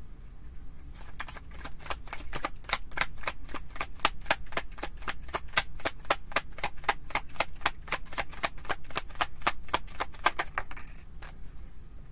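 Tarot deck being shuffled in the hands: a quick, even run of card clicks, about five a second, starting about a second in and stopping about a second before the end.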